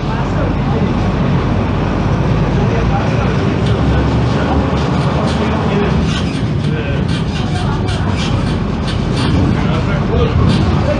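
A Tatsa Puma D12F city bus's front-mounted six-cylinder diesel engine runs steadily. Scattered sharp clicks and rattles come through the second half.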